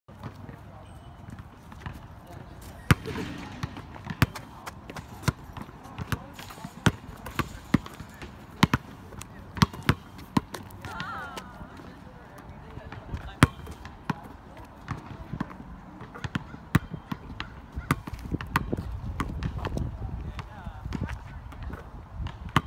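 A basketball bounced on an outdoor asphalt court, a sharp smack about every half second to a second as it is dribbled.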